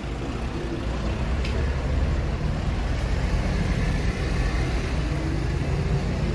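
Street traffic: a steady low rumble of motor vehicles on the road, with an engine tone rising and falling faintly in the second half.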